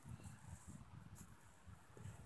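Near silence: only a faint low background rumble.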